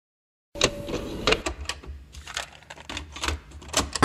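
A run of irregular sharp clicks and knocks over a low hum, starting about half a second in.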